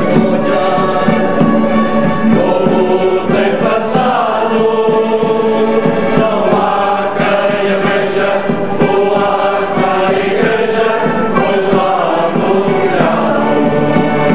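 A Portuguese folk singing group (grupo de cantares) of men singing together in chorus, with steady held instrumental tones beneath the voices.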